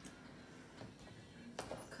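Quiet room tone with a few faint small knocks of handling, then a child's voice saying "cut" near the end.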